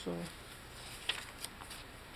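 Tea-dyed paper pages of a handmade journal being turned and handled by hand: a soft paper rustle with a couple of light flicks about a second in.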